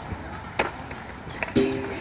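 Skatepark sounds: a few sharp clacks of skateboards and BMX bikes on concrete, then a loud hit about a second and a half in, followed by a short pitched ring that sinks slightly in pitch.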